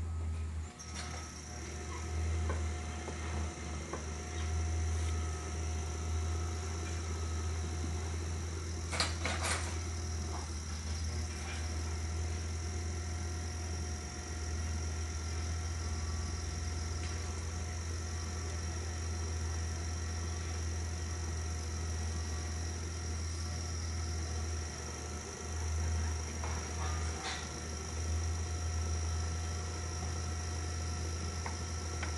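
Electric potter's wheel running with a steady motor hum and a high, thin whine while a leather-hard clay bowl's foot is trimmed, with a couple of brief clicks about nine seconds in and again near the end.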